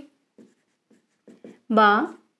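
Marker pen writing on a whiteboard: a few short, faint strokes, followed near the end by a woman's short spoken word.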